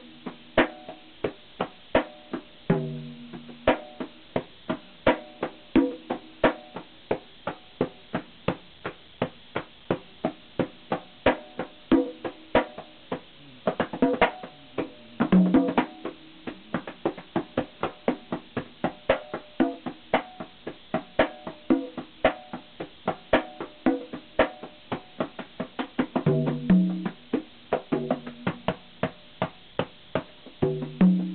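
Hand-played conga drums: a steady run of sharp slaps, about two to three a second, broken now and then by short runs of deeper, ringing open tones.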